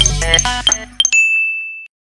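Electronic background music with bright chime notes that ends about a second in, leaving a single thin high ring that holds for under a second and then cuts off abruptly.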